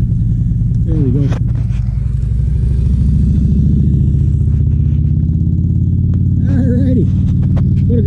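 Large touring motorcycle riding past at low speed, its engine running with a deep, steady rumble that grows a little louder and shifts pitch about three seconds in as it goes by.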